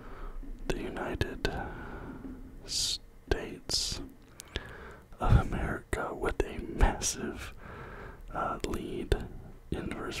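A man whispering close to the microphone, with the scratching and small taps of a pen writing on paper.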